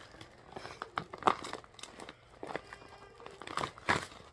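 Packaging crinkling and rustling as small grooming-kit items are unwrapped and handled, with sharper clicks about a second in and again near the end.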